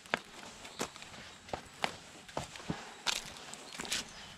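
Footsteps on a dirt and stone trail, with sharp, irregular knocks and clicks about twice a second, from a mountain biker on foot pushing the bike up a steep stepped path.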